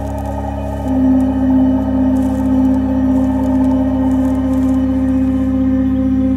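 Slow ambient instrumental background music of sustained, organ-like held chords, with a stronger held note coming in about a second in.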